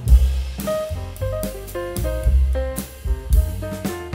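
Instrumental background music with a drum kit, a bass line and a light melody, in a steady beat.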